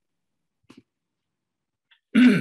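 Near silence on a video-call audio line, broken by one brief faint sound a little under a second in.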